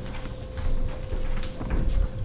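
Footsteps on a carpeted floor and low thumps as a person walks back to a chair and sits down, with a few light clicks and a faint steady hum.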